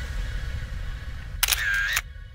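Low rumble with music fading out, then near the end a camera-shutter sound effect: two sharp clicks about half a second apart, marking the cut to a still-camera timelapse.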